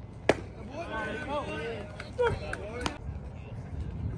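A pitched baseball popping sharply into the catcher's mitt, followed by voices calling out and a few lighter knocks.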